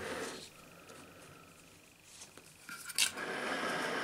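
Handling noise from the rubber head straps of a British Light Anti-Gas Respirator being pulled tighter to reseal the mask, with one sharp click about three seconds in followed by a soft hiss.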